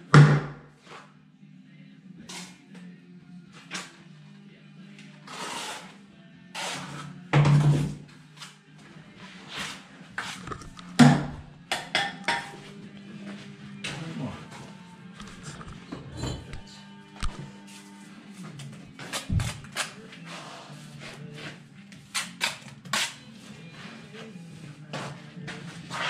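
Bricklaying work: a steel trowel scooping and scraping mortar and tapping bricks into place, in short, sharp strokes, the loudest near the start and around a third of the way in. Background music plays throughout.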